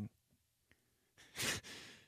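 A man's breathy, voiceless laugh into a close microphone: a short puff of breath about a second and a half in, trailing off.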